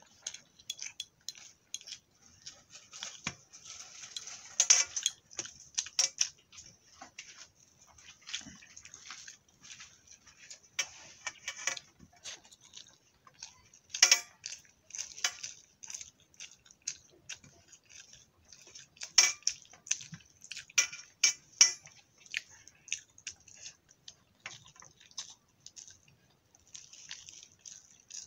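Fingers mixing rice by hand on a plate, with irregular sharp clicks and taps as the fingers strike the plate. The loudest come in a few quick clusters, about a third of the way in, halfway, and again two-thirds through.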